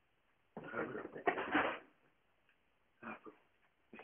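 Wordless grunting 'uh-ah' vocal noises in two bursts: a longer, loud one about half a second in and a short one near the three-second mark.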